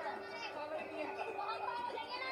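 Dialogue from a film trailer: voices talking, with a steady held tone beneath them.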